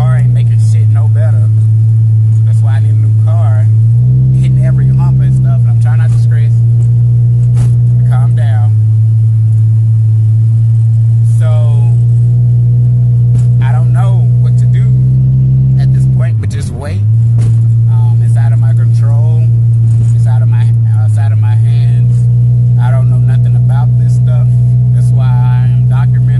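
A loud, steady low hum that jumps abruptly to a new pitch a few times, with a brief dip about two-thirds of the way through, and a man's voice talking faintly beneath it.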